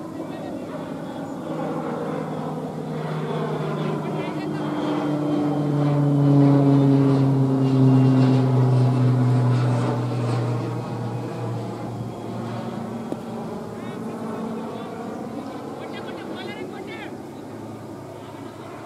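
An aircraft flying over: a steady engine drone that swells to its loudest partway through and then fades, its pitch falling slowly as it passes.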